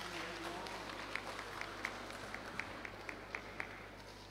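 Faint crowd murmur in a hall over a steady low hum, with a run of about ten light, evenly spaced hand claps, about four a second, from about a second in until near the end.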